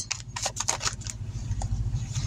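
Tarot cards being handled and shuffled: several short crisp flicks in the first second, then softer rustling, over a low steady hum.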